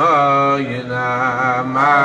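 Men singing a slow wordless Chassidic melody (niggun), holding long notes that slide from one pitch to the next.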